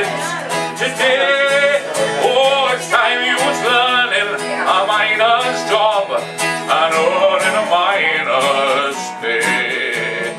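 Two acoustic guitars strummed and picked in a country-style song, with a man's voice singing over them.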